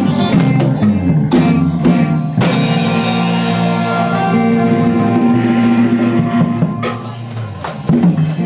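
A live band of electric guitar and drum kit playing a molam song. A crash rings out about two and a half seconds in and hisses away over the next few seconds. The music thins out near the end as the song closes.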